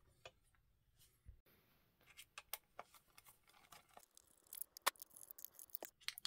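Faint, scattered small clicks of plastic parts being handled as the receiver box on an RC crawler chassis is opened, with one sharper click near the end. The rest is near silence.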